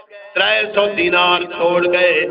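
A man's voice intoning in a drawn-out, sing-song sermon delivery, holding long notes that glide in pitch, after a short pause just after the start.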